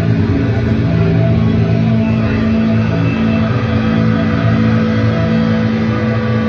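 Doom metal band playing live: loud, long held chords from distorted guitars and bass ring on steadily.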